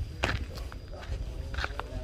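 Footsteps of a person walking over sandy, gravelly ground, a few separate steps, over a steady low rumble.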